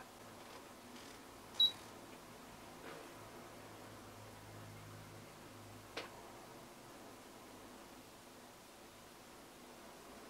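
Quiet room with a few small clicks. The loudest comes about one and a half seconds in with a short high beep, and a faint low hum rises and fades in the middle.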